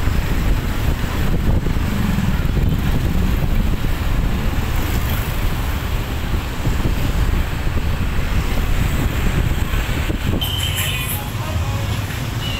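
Steady rumble of road traffic heard from a scooter riding among other scooters and cars, with engine and tyre noise in a continuous low hum.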